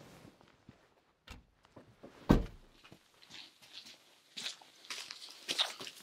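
A vehicle door slams shut with one loud thud a little over two seconds in, after a softer knock. Scattered light footsteps and small scuffs follow.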